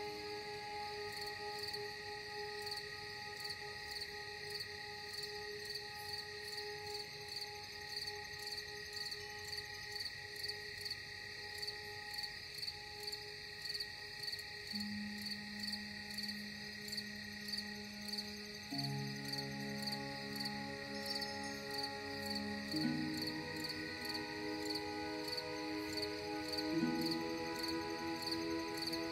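Crickets chirping in a steady, even rhythm over slow ambient music of long held notes; about halfway in, a low held chord enters and shifts every few seconds.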